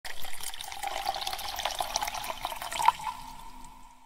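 Water-splash sound effect for an animated logo: splashing and trickling with a sharp hit about three seconds in, then a single ringing tone that fades away.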